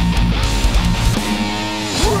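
Metalcore band music: distorted electric guitars over drums, with the guitars ringing out on a held chord in the second half while the low drum hits drop away.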